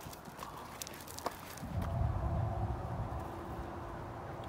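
Footsteps crunching on a gravel trail with timber steps, a few sharp clicks in the first half. From about halfway, wind rumbles on the microphone.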